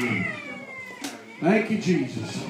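A voice through the church microphone making drawn-out, wavering sounds that rise and fall in pitch rather than clear words. It is loudest about one and a half seconds in.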